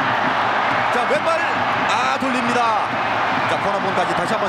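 Stadium crowd noise: the steady din of a large crowd during a football match, with individual shouts and whistles rising above it.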